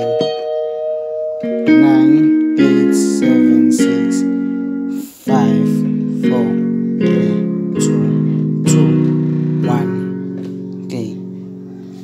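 Roland EXR-3s arranger keyboard played by hand: a few single notes and small note groups at first, then after a brief gap a run of held chords changing about once a second, growing fainter toward the end.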